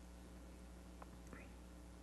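Near silence: room tone with a low steady hum, broken by two tiny clicks about a second in.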